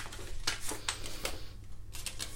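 Light handling of cut paper and card on a craft table: a few soft taps and rustles as the freshly trimmed pieces are picked up.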